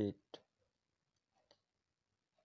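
A single spoken word, "it", at the start, then near silence with one faint click about one and a half seconds in.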